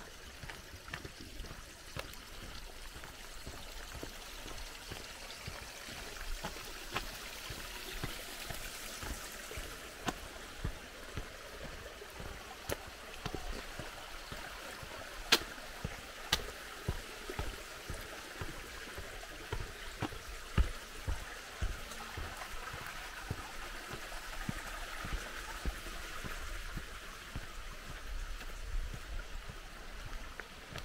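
Water running in a small stone-lined mountain stream, a steady even hiss, with footsteps thumping at walking pace on a path and a few sharp clicks about halfway through.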